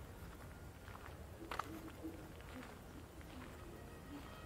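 Faint outdoor ambience with a few soft, irregular steps or taps on a sandy path, the clearest about one and a half seconds in.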